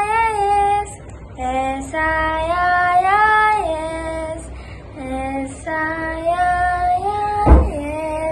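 A girl singing the school anthem solo and unaccompanied, in long held notes with short breaks between phrases. A brief thump sounds near the end.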